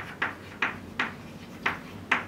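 Chalk on a blackboard while writing: a string of short, irregular taps and scrapes, about six or seven strokes in two seconds.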